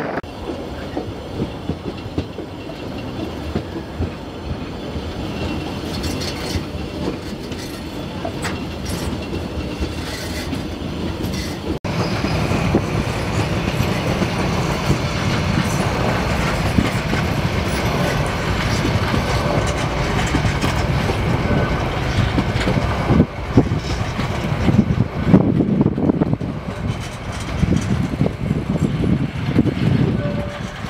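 A 1000 mm narrow-gauge train rolling past at close range: a small diesel locomotive hauling container flat wagons and passenger coaches, the wheels rumbling and clicking over the rail joints. About twelve seconds in the sound becomes louder and fuller as the wagons and coaches pass close by.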